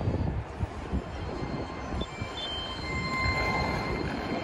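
Outdoor urban ambience: a low, uneven rumble with a steady noisy background and a few faint, thin high-pitched squeals about halfway through.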